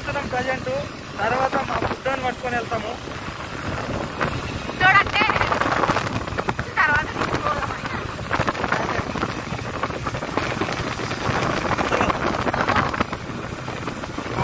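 People talking while riding a motorbike, over a steady rush of wind on the microphone and the bike's running noise.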